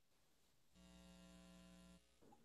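Near silence, then from about three-quarters of a second in a faint steady electrical hum with many evenly spaced overtones, which stops abruptly.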